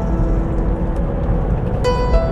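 Steady road and engine rumble inside a moving car's cabin, with background music holding a sustained note in a gap between sung lines.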